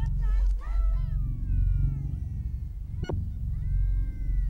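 Soundtrack music with a deep steady bass and high gliding tones that bend and fall in pitch, broken by one sharp click about three seconds in.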